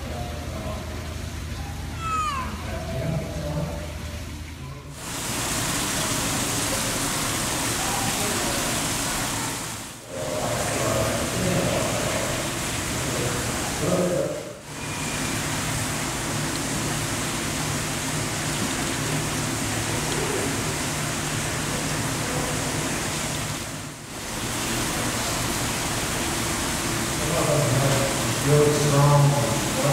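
Steady, even outdoor hiss, with faint voices now and then. It dips briefly about 10, 14 and 24 seconds in. The first five seconds are quieter, with a low steady hum and a short rising squeak about two seconds in.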